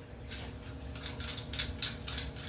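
Faint, scattered clicks and rattles of a one-inch bulkhead fitting being handled and its nut unscrewed, a few more clicks in the second half.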